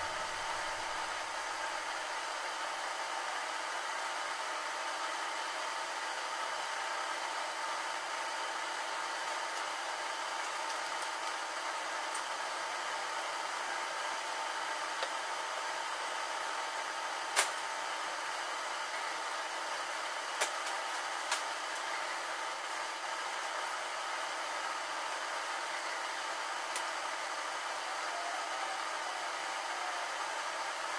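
A steady machine hum with hiss, like a small motor or fan running, broken by a few sharp clicks, the loudest just past halfway.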